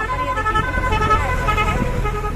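A motor vehicle running close by with a low engine rumble, overlaid by a run of steady high-pitched tones that change pitch every fraction of a second.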